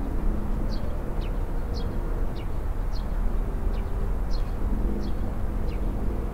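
Outdoor park ambience: a steady low rumble, with a small bird giving short, high, falling chirps about every half second.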